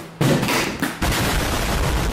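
Explosion sound effect: a sudden blast, then a deep rumble that runs for about a second and stops.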